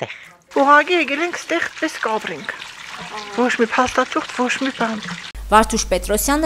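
A woman talking, then, after a cut about five seconds in, another woman's voice over a steady low hum.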